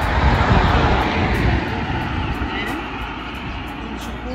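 A road vehicle passing close by, a rushing rumble that swells to its loudest in the first second or so and then fades away.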